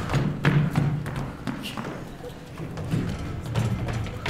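Running footsteps of two people on a hollow wooden stage floor, a quick uneven patter of thuds.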